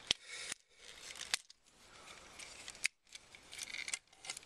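Hard plastic parts of a Transformers action figure clicking and rubbing as they are handled, with a few sharp clicks: one right at the start, then others at about a second and a half and near three seconds.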